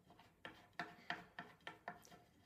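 A bolt being finger-tightened into a flat-pack footstool frame: about six faint clicks spread over two seconds as it is turned by hand.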